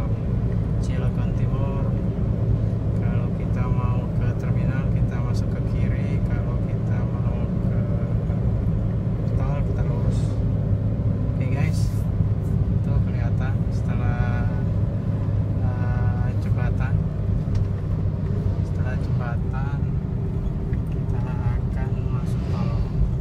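Steady engine and road noise inside a moving car's cabin, with voices heard faintly over it.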